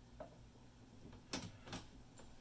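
A few faint clicks and creaks from a plastic battery-cell holder being levered against a desk drawer edge, straining before it breaks.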